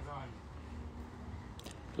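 Faint, distant voices over low background noise, with a brief faint voice right at the start.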